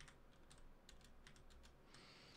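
Faint computer keyboard keystrokes: a few soft, scattered key clicks as blank lines are entered in the code.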